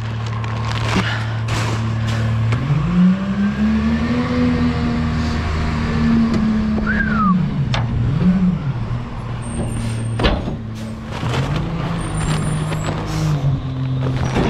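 Engine of a McNeilus rear-loader garbage truck, heard close up from the side step: idling, then revving up as the truck pulls ahead, easing off, revving again and dropping back toward idle near the end as it reaches the next pickup. Scattered knocks and rattles from the truck body.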